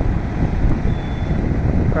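Steady wind rumble buffeting the microphone, mixed with road and vehicle noise by the highway. A faint thin high tone sounds for about half a second, about a second in.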